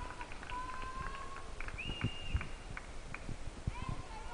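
Scattered hand claps with a few short, high, squeaky tones in a large hall.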